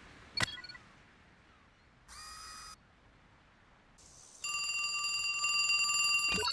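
A click as the emergency phone's SOS button is pressed, a short electronic beep about two seconds later, then a cartoon emergency-call alert ringing with a rapid trill near the end: the call coming through at the rescue station.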